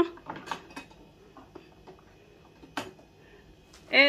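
A few light, scattered clicks and knocks of a plastic pet carrier being handled as its wire door and fittings are fastened.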